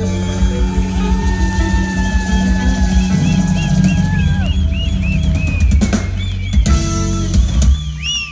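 Live band playing the closing bars of a song: drum kit and bass under long held notes. About halfway through the held notes drop away, leaving a few separate loud drum hits near the end.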